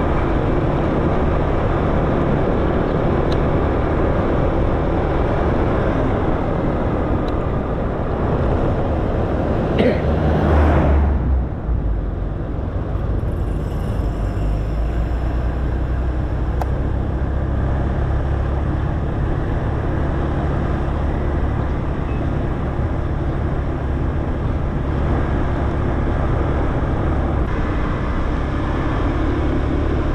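Honda scooter riding at road speed: steady wind and road noise on the handlebar-mounted microphone over the engine. About ten seconds in a brief loud whoosh falls in pitch, and after it the noise settles lower and steadier.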